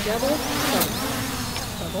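Small camera quadcopter drone's propellers buzzing as it descends to land, the pitch wavering as the throttle changes. A single sharp click a little under a second in.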